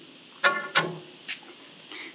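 Steady high-pitched chirring of insects, with a brief voiced sound from a person about half a second in.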